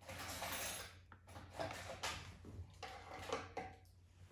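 Irregular rustling and light knocks from objects being handled, in three or four uneven bursts.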